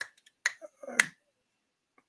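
Three short, sharp clicks about half a second apart, the last one the loudest, with a faint low vocal sound just before it.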